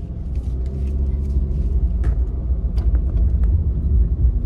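Steady low rumble of a car running, heard from inside the cabin, with a few faint clicks.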